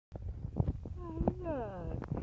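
A person's voice making a wordless sound whose pitch glides downward, with a few sharp clicks before it.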